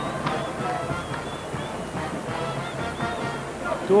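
Steady arena crowd din with music playing underneath and faint voices mixed in.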